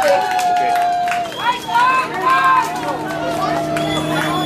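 Young voices calling out and chattering in short, high-pitched bursts, with a steady low hum underneath.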